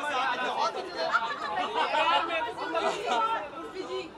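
Several voices talking over one another: chatter from the people around.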